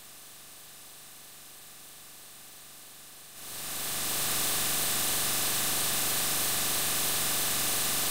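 Faint steady hiss. Then, about three and a half seconds in, a rushing air noise like a running fan comes on, swells over about a second to a much louder level, and holds steady.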